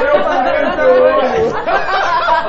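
Voices chattering with no clear words.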